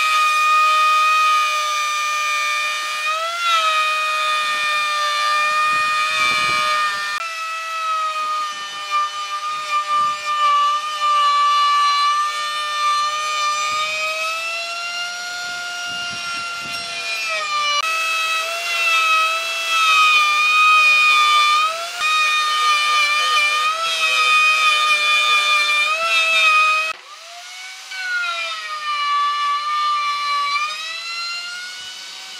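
Electric plunge router cutting a circular groove in pine boards: a steady high-pitched motor whine whose pitch sags and recovers as the bit bites into the wood. The sound breaks off briefly near the end before the whine picks up again.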